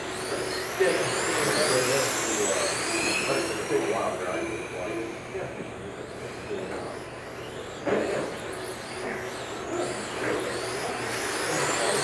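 Several 1/10-scale electric RC touring cars racing on a carpet track, their motors whining in overlapping pitches that rise and fall as the cars accelerate and brake through the corners. A sharp knock comes about eight seconds in.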